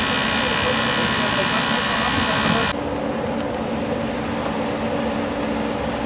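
Hydraulic rescue-tool power unit running with a steady high whine, which cuts off abruptly a little under three seconds in. A quieter, lower steady hum follows.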